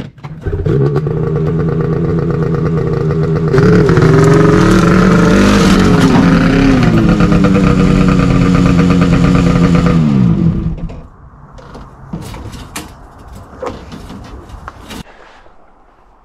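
Polaris 850 Khaos snowmobile's two-stroke twin starting up and idling. About three seconds in it gets much louder, the revs rising and falling for some seven seconds as the sled climbs a ramp into a pickup bed. It shuts off about ten seconds in, followed by a few clunks and knocks.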